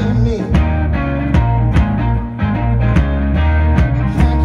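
Live blues-rock band playing: electric guitar over bass guitar and drums, with a steady beat.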